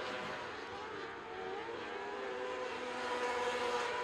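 Several 600cc micro sprint car engines running at high revs together on a dirt oval, their pitch wavering slightly as they go through the turns, growing a little louder near the end.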